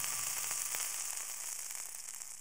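Steady high sizzling hiss from food cooking in a steel pot on a gas burner as rice is added, with a few faint ticks, easing slightly toward the end.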